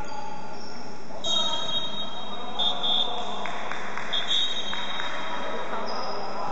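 A high-pitched steady tone sounds for about four seconds, starting about a second in and swelling louder twice, over steady background chatter in a large hall.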